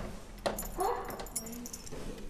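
Light metallic clicking and rattling of a window latch being handled, with a short spoken "kom" about a second in.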